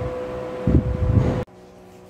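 A steady hum over low rumbling noise, which swells briefly and then cuts off abruptly about one and a half seconds in, leaving a much quieter hum.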